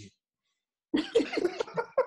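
Near silence for about a second, then a man's voice breaking into laughter.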